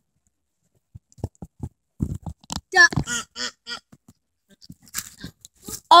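Scattered knocks and crunches of the camera being handled and moved.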